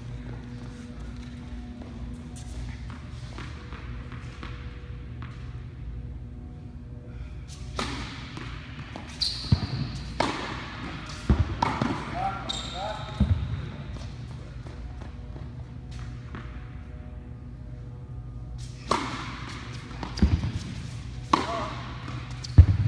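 Tennis balls struck by rackets and bouncing on an indoor hard court during a volley rally: sharp hits come in a cluster from about eight to thirteen seconds in and again near the end. A steady hum runs underneath.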